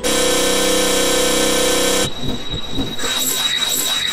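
Black MIDI piano music played through a Casio LK-300TV soundfont: a dense wall of held notes for about two seconds, then an abrupt break into rapid cascading runs of notes.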